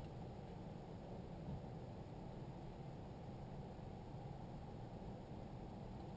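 Faint, steady background hiss of room tone inside a small space, with no distinct sound event.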